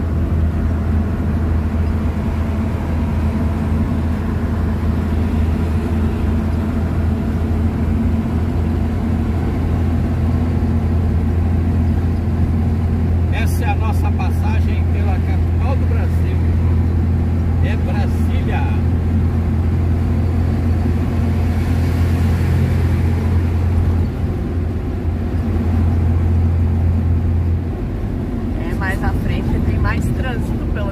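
A road vehicle's engine drone and road noise heard from inside the cab while cruising: a loud, steady low hum that eases off twice near the end.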